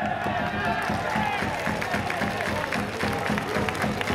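Stand cheering section: a drum beating steadily, about three beats a second, under brass and chanting voices, with some clapping.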